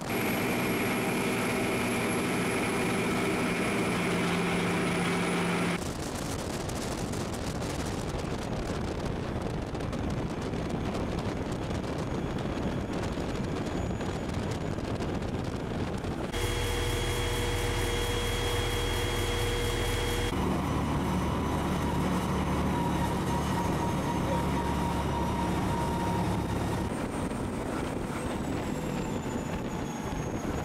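Vehicle driving on the road: a steady engine drone with tyre and wind noise, with no rise or fall in pitch. Its tone changes abruptly about six, sixteen, twenty and twenty-seven seconds in. From about sixteen seconds in it is the Cadillac Gage V-100 armored car's own engine and drivetrain, heard from inside the vehicle.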